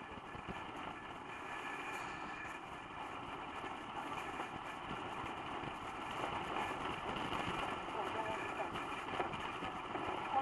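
Steady road and engine noise inside a car's cabin while driving at speed on an expressway, growing slightly louder through the stretch.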